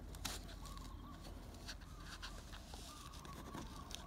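Faint crinkling and small clicks of a registration emblem sticker being peeled from its paper backing, with faint bird calls in the background.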